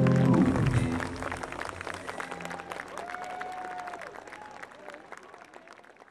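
A live rock band (bass, drums and keyboards) ends the song on a held final chord that stops about a second in. Audience applause follows and fades away toward the end.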